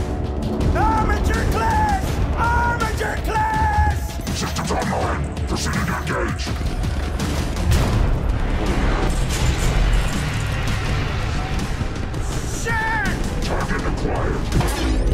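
Film soundtrack of dramatic music over heavy low rumble, with booms, metallic crashes and mechanical clanks. A distorted, machine-like voice speaks a targeting call that ends in 'target acquired'.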